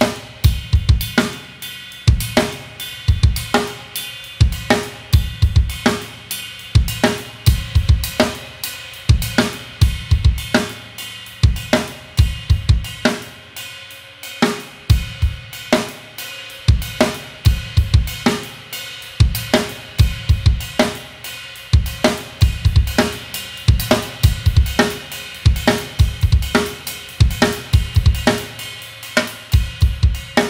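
Drum kit playing a Kherwa (Kaharwa) groove in 2/4. Kick drum and snare play a steady repeating pattern, and the ride cymbal is struck on its bell on the off-beats and on its bow on the downbeats, ringing over the beat.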